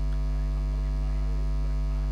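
Steady electrical mains hum, a low buzz with a ladder of overtones, holding at an even level.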